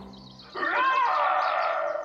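A cartoon space monster's roar: a growling, wavering voice that starts about half a second in and lasts about a second and a half.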